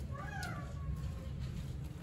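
A young child's brief whining cry, about a second long, falling in pitch, over a steady low room rumble.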